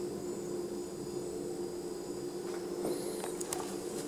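Quiet room tone: a steady low hum, with a few faint clicks about three seconds in.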